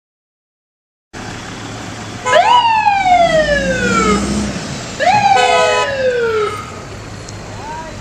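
FDNY fire truck siren sounding twice, each time jumping up and gliding down over about two seconds. A short steady horn tone comes with the second sweep, over steady street traffic noise.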